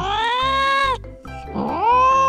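A domestic cat meowing as a sound effect: two long, drawn-out meows, the second starting a little past halfway, for the cat in pain. Background music with a steady low beat runs underneath.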